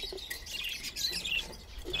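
Caged budgerigars chirping, a busy stream of short, high, overlapping calls.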